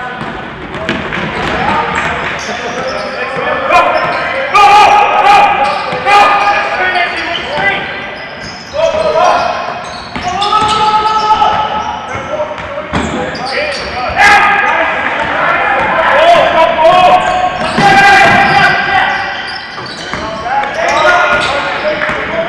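Live basketball game sound in an echoing gym: a ball bouncing on the court, with scattered sharp strikes. Calls and shouts from players and crowd come and go in waves.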